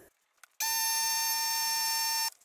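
A steady, high, whistling tone from compressed air rushing through a tire-inflator chuck into black iron gas pipe during a pressure test. It starts abruptly about half a second in, holds an even pitch for under two seconds, then cuts off.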